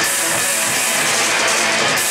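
Live rock band playing loud and without pause: electric guitars, bass guitar and drum kit together.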